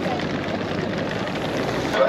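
A steady low rumble with people's voices faintly under it.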